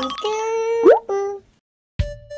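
Cartoon sound effects from an animated logo sting: a held pitched tone, a quick rising pop-like glide and a short note, then a sudden cut to silence about a second and a half in.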